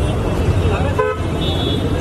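Outdoor street noise: a steady low rumble of traffic and crowd, with background voices and a brief vehicle horn toot about a second in.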